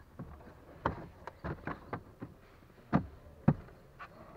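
Plastic cabin air filter cover being pushed back into its housing in a Geely MK Cross dashboard: a run of light plastic clicks and knocks, with two louder ones about three and three and a half seconds in as it is seated.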